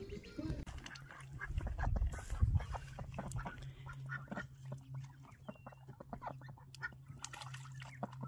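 Domestic ducks quacking, a run of short irregular calls, over a low steady hum.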